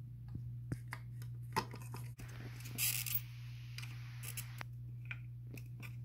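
Quiet, scattered clicks, taps and short rustles of a soldering iron tip and hands working on an ECM blower motor's circuit board while the old thermistor is desoldered, over a steady low hum.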